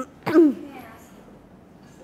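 A woman clearing her throat once, a short sharp sound with a falling voiced tail near the start, followed by quiet room tone.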